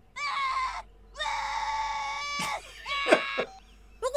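A high-pitched voice screaming: a short cry at the start, then a scream held on one pitch for over a second, ending in a couple of short falling cries.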